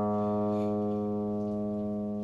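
A guitar's fifth string, tuned down a half step to A-flat for E-flat tuning, ringing as one sustained reference note and slowly fading.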